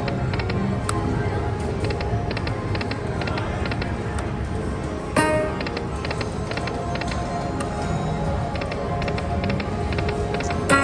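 Dragon Link slot machine playing its game music with a string of short chiming ticks, and a brighter chime about five seconds in.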